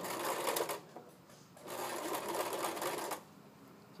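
Electric sewing machine stitching in two short runs with a brief pause between, back-tacking to lock the start of an edge-stitched hem. It stops a little before the end.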